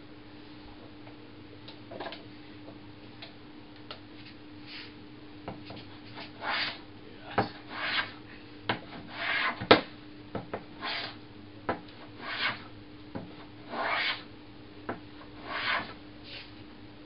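Rider No. 62 low-angle jack plane cutting oak: about seven short rasping shaving strokes, one every second and a half or so from about six seconds in, with sharp knocks between them, the loudest near the middle of that run.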